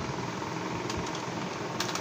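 Steady low machine hum, like a small motor or fan running, with a few faint clicks of hands handling a packet and scissors about a second in and again near the end.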